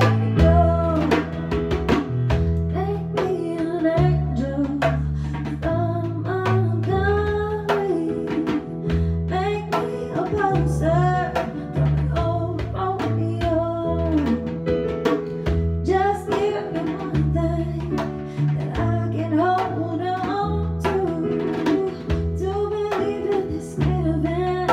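Live acoustic-style band music: a woman singing over sustained chords and bass notes on a Casio digital keyboard, with a djembe hand drum keeping the beat.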